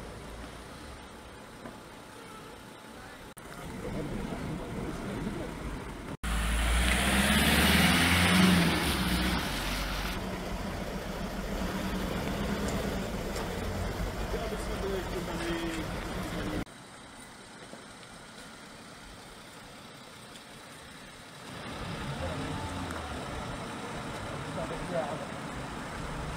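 A vehicle engine running close by, loudest for a few seconds about a quarter of the way in, over street ambience with voices talking in the background.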